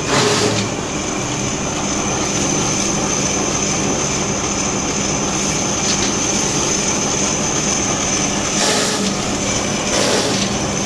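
Commercial strip-cut paper shredder running and cutting a stack of paper into strips: a steady motor hum and high whine over the dense rasp of paper being cut. Brief louder surges of cutting come right at the start and again near the end.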